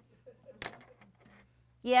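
Faint handling of small objects with one sharp, light click about a third of the way in. A woman's voice says "yes" near the end.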